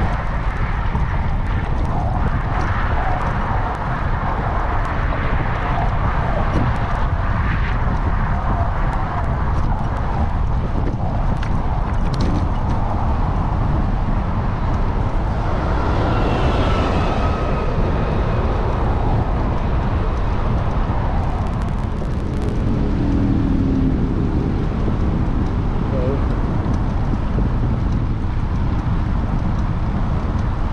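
Wind buffeting the microphone of a camera on a moving bicycle, a loud steady rumble, with traffic noise from the road alongside.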